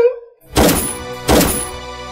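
Two gunshots from a handgun, less than a second apart, each trailing off briefly, followed by soft background music with held tones.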